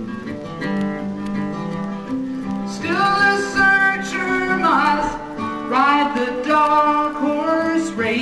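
Live solo acoustic guitar strummed and picked, with a man's singing voice coming in about three seconds in.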